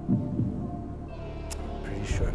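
Tense game-show question background music: a low held drone with two low pulses near the start.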